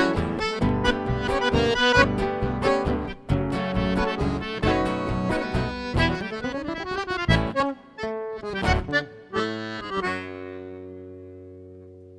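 Instrumental gaúcho nativist music: accordion with acoustic guitars and bass guitar playing a lively, rhythmic closing passage, then ending on a held chord that fades out about ten seconds in.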